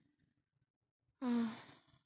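A woman sighs once a little over a second in: a short voiced breath out that trails off. Near silence around it.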